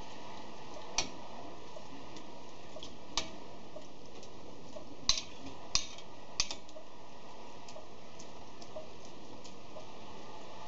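Porcupine quills being stirred by hand in dye in an enamel saucepan, with sharp clicks against the pot: one about a second in, another near three seconds, then three close together between five and six and a half seconds. Fainter ticks fall between them over a steady low hiss.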